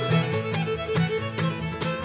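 A bluegrass string band playing live: fiddle out front over banjo, mandolin, acoustic guitar and upright bass, with a steady bouncing bass beat.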